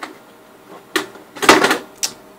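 Cardboard box being handled and moved on a desk: a sharp knock about a second in, then a louder short scrape.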